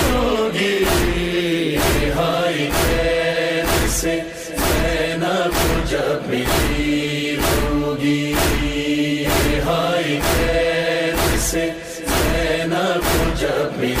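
Urdu noha, a Muharram lament, recited by a male voice over backing voices holding long notes, with a steady beat about twice a second.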